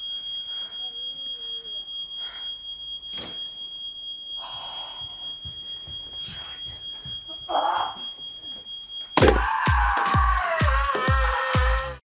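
Smoke alarm sounding one continuous high tone, set off by burning food, with a few knocks and rustles over it. About nine seconds in the alarm gives way to loud music with a heavy beat about twice a second, and a woman screams over it.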